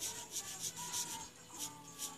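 Felt-tip marker scratching across sketchbook paper in quick back-and-forth strokes, about four or five a second, as an area is filled in black.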